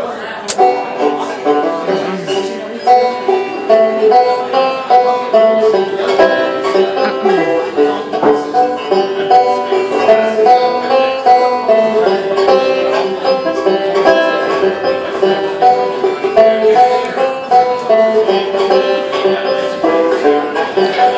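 Solo banjo picking a slow melody, a steady run of plucked notes with no singing.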